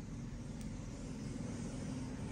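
Steady low rumbling background noise with a faint hiss above it, and a faint tick about half a second in.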